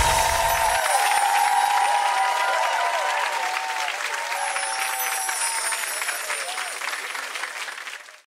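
Studio audience applause with cheering and whoops, over outro music, fading away toward the end.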